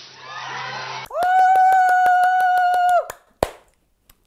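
Studio audience cheering, then a loud, steady held tone with rapid, evenly spaced claps, about seven a second, for about two seconds. A single sharp click follows.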